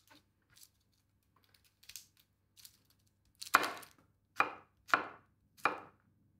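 Kitchen knife chopping garlic cloves on a wooden cutting board: faint light taps at first, then four sharp knife strikes on the board in the second half, roughly half a second to a second apart.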